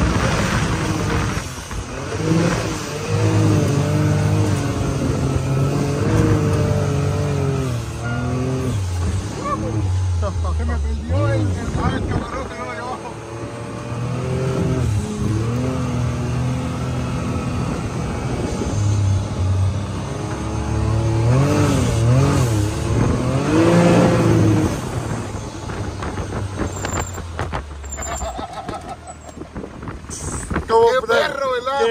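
Can-Am Maverick 1000 side-by-side driven hard across soft sand dunes, its engine pitch rising and falling as the throttle is worked.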